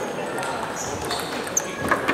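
Busy table tennis hall between points: indistinct chatter echoing in the hall, with a few scattered celluloid ball clicks from rallies at the other tables, one sharper click near the end, and brief high shoe squeaks on the wooden floor.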